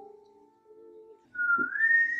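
A man whistling a signal through his lips, starting about a second in with a note that slides up in pitch and then holds, over soft background music.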